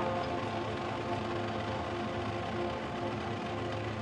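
University marching band playing a slow passage of long, held chords, heard from the stadium stands.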